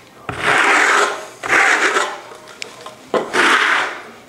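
Trowel scraped across a wall coated with dried faux sandstone paint, knocking down its rough aggregate: three scraping strokes about a second apart.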